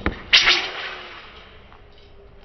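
Two sharp cracks from a young wushu performer's hand weapon as he swings it: a short one at the start, then a louder one about a third of a second in that dies away over about a second.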